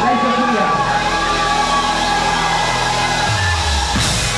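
Live music played over a club PA, with a performer's voice through the microphone and crowd noise; a deep bass note comes in near the end.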